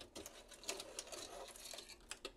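Circuit board being worked loose and lifted out of a metal equipment chassis: a run of faint, irregular clicks and scrapes.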